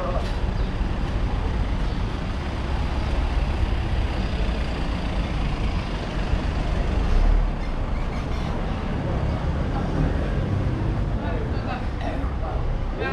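Street traffic rumbling steadily with a noisy low hum, swelling briefly about seven seconds in as a vehicle passes close by, with voices of passers-by.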